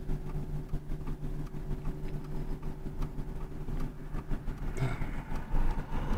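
Car engine idling while stopped, heard from inside the cabin as a steady low hum.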